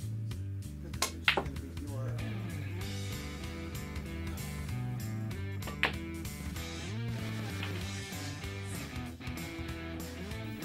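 Pool balls clicking as they are struck: two sharp clicks about a second in and one near six seconds. Background guitar music plays throughout.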